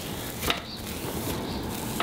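Oily cloth rag rubbing over the outside of a cast concrete bowl: a steady scrubbing, with one light knock about half a second in.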